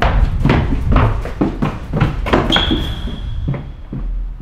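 Quick footsteps pounding up a wooden staircase, about three to four thuds a second, easing off near the end. A steady high beep comes in a little over halfway through and holds for over a second.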